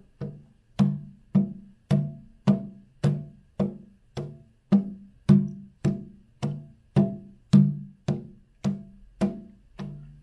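Hand drum tapped by hand in a steady beat, just under two strokes a second, each a low thud with a short pitched ring; a few strokes land harder than the others.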